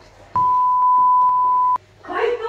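A censor bleep: one steady, high electronic beep about a second and a half long, starting and stopping abruptly.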